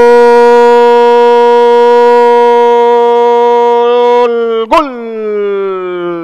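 A football commentator's long, drawn-out 'gol' cry, held very loud on one steady pitch for about four seconds, then breaking briefly and sliding down in pitch as the call trails off.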